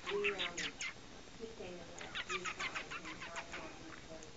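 A person making quick runs of short, high clicking sounds with the mouth to call a cat: a brief run at the start and a longer run of about nine clicks around the middle.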